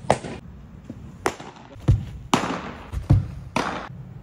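A series of about six sharp knocks and thuds over four seconds, some with a deep low thump and some trailing a short rustling smear.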